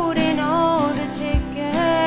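A female voice singing a slow, wavering melody over a strummed acoustic guitar, with a single low thump about one and a half seconds in.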